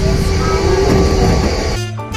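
Small amusement-park ride train running: a steady rumble with a constant hum. Just before the end it gives way abruptly to instrumental music.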